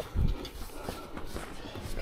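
Quilted fabric dog seat cover being handled and laid in place: a low thump near the start, then faint rustling and small ticks.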